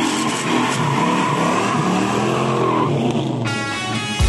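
The 1968 Dodge Charger's Mopar 440 V8 pulling away under throttle, its pitch rising and falling as it accelerates. Music comes in about three and a half seconds in.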